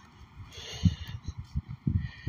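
Irregular low thumps and rumble on the microphone of a handheld camera carried while walking outdoors, typical of wind buffeting and handling noise, with a short hiss about half a second in.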